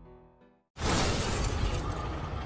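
Film-trailer score with sustained tones fades out. After a brief silence, a sudden loud cinematic impact hits: a noisy crash with a deep rumble underneath that keeps sounding.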